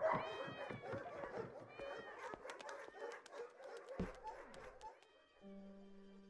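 Faint animal cries of shelter animals with scattered light clicks, and a thud about four seconds in; near the end soft, steady held music notes come in.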